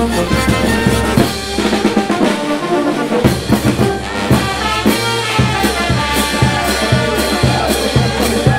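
Street brass band playing, with trombones, trumpets and saxophones over bass drum and cymbals. The bass and drums drop out about a second in, leaving the horns alone, and come back with a steady beat about three seconds in.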